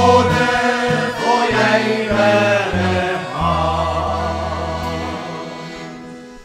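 Men's choir singing a hymn in harmony, accompanied by accordion and acoustic guitar. The final chord is held and fades away toward the end.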